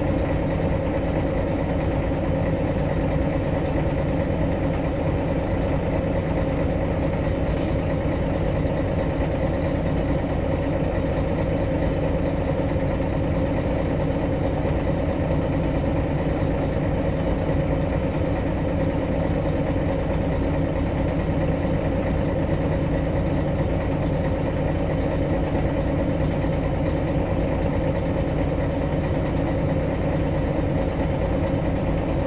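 Engine of a MAN NG313 articulated city bus running steadily, heard inside the passenger cabin as an even hum that holds one pitch without revving up or down.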